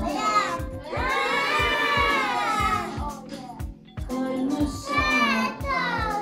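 Children's song with a steady beat, with children's voices singing along.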